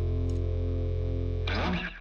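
Podcast closing theme music: a sustained, distorted guitar chord that breaks off about one and a half seconds in with a short noisy rake of the strings, then fades out.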